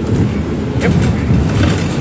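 Cabin noise inside a moving London bus: a steady low rumble of engine and road, with a few light rattles about halfway through.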